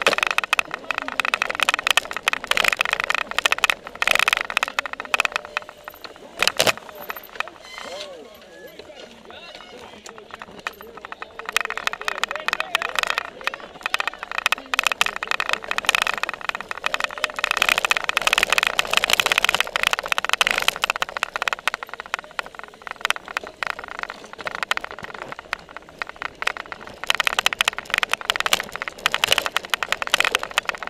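Continuous rattling and clattering from a cyclocross bike and its seat-mounted camera jolting over bumpy grass, with indistinct voices from the surrounding riders and spectators. It goes quieter for a few seconds about a third of the way in, then picks up again.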